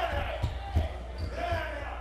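Dull thuds of bodies slamming into bar chairs and the floor in a brawl, two of them about a third of a second apart, the second the loudest, with shrill yelling voices over them.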